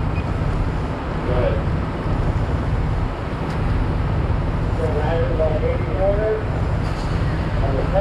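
Steady low rumble of a fire apparatus engine running at the fireground, with faint voices about a second and a half in and again from about five to six seconds in.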